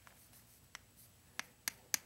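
Chalk on a chalkboard as a symbol is written: four sharp taps in the second half, the last and loudest near the end.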